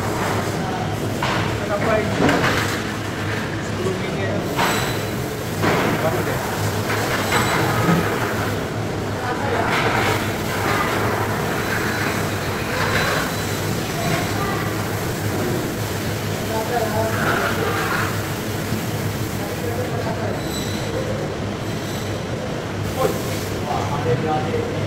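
Steady mechanical rumble and hum of a fish-processing floor, with indistinct voices in the background and a few short knocks.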